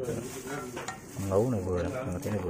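A plastic spoon scooping wet fermented rice paste into a metal pot of chopped lemongrass, chilli and meat, with soft wet scraping and small knocks against the pot. A low voice sounds briefly in the background just past the middle.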